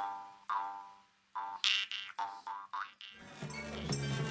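A run of twanging, boing-like notes over a steady low drone, each sweeping down in tone and dying away within about half a second. About three seconds in, a live acoustic band starts up with guitar, mandolin and double bass.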